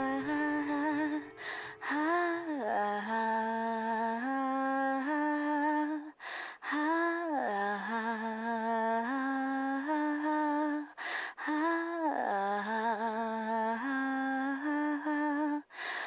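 A voice humming a slow, wordless melody in held notes with gliding pitch bends, the same phrase repeating about every five seconds.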